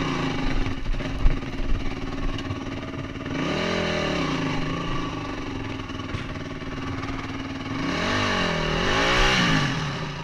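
Motorcycle engine on an off-road ride, revving up and down over and over as it picks its way over rocks, with the loudest revs about three and a half seconds in and again near the end. Sharp knocks and clatter, loudest about a second in.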